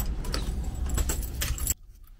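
A bunch of keys jangling and clicking, over a low handling rumble; it cuts off abruptly near the end.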